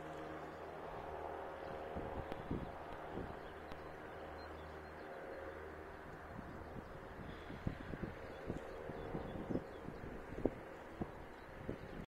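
Steady distant drone of a light propeller aircraft's engine, the tow plane pulling a glider off the runway. Wind buffets the microphone in low thumps, sharper and more frequent in the last few seconds.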